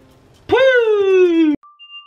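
A man's drawn-out vocal call, falling slowly in pitch for about a second, cut off suddenly about a second and a half in. A faint steady tone starts just after.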